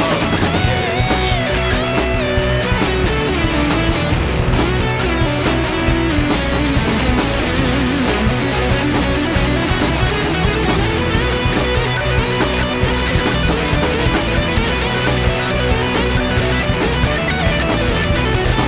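Instrumental section of a rock song: guitar lines over bass and drums with a steady beat, no singing.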